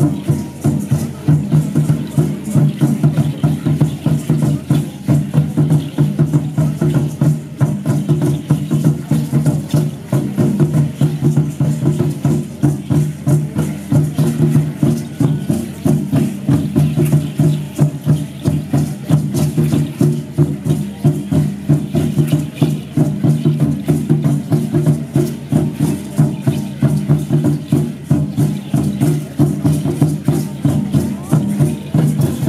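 Aztec ceremonial dance music: a fast, steady drum beat with a dense clatter of shaken rattles, keeping an even rhythm without pause.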